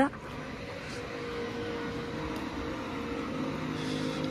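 Urban street background with a steady mechanical hum that slowly grows louder.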